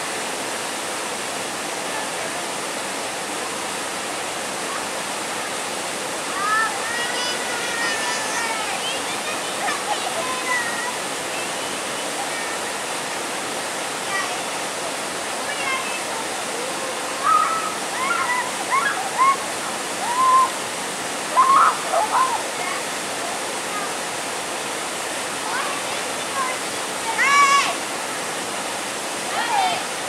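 Steady rush of water from a brook's small cascade pouring into a pool. Short, high-pitched voices call out now and then over it, loudest in a cluster past the middle and once near the end.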